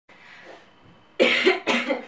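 A person coughing twice, two short loud coughs just over a second in, about half a second apart.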